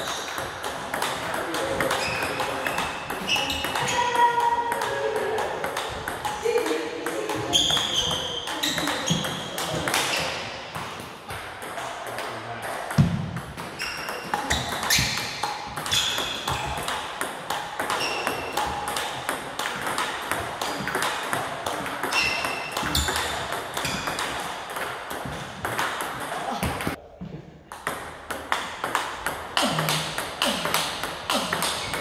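Table tennis ball clicking rapidly off the rackets and the table in a continuous rally, as forehand and backhand blocks return the opponent's loops. There is a brief gap near the end.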